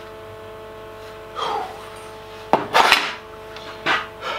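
A folded 3 mm metal sheet scraping and clattering as it is handled and laid on a steel workbench: a short scrape about a second and a half in, a louder metallic scrape just past halfway, and a light knock near the end.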